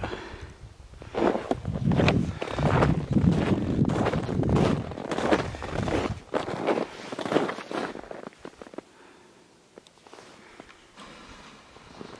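Footsteps walking through snow, a run of repeated steps for most of the first eight seconds, then much quieter.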